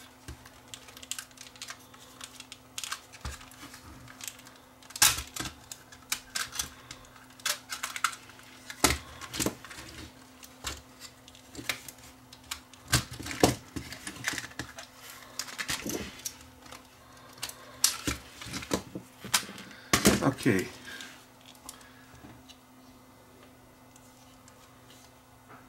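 A Sony CCD-TR71 8mm camcorder being taken apart by hand: irregular clicks, knocks and scrapes of its plastic housing and chassis as parts are pried and slid apart, with a few louder snaps and quieter handling near the end.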